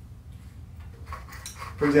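Faint small clicks and clinks of hands handling small objects on a table while preparing a joint, over a low steady hum. A man starts speaking near the end.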